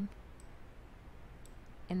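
Two faint clicks about a second apart, over a low steady hum. A woman's voice starts right at the end.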